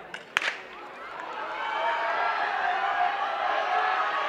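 A starting gun fires once, a sharp crack about a third of a second in, starting a sprint race. Crowd cheering and shouting then builds as the runners go.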